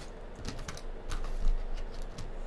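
Handheld lighter being flicked while lighting a cigarette: a series of sharp clicks, with a louder low bump about one and a half seconds in.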